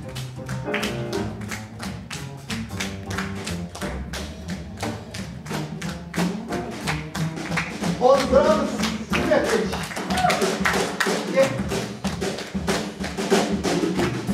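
Jazz upright double bass plucked in a low melodic line under a steady light ticking that keeps time. About eight seconds in, a voice joins the bass.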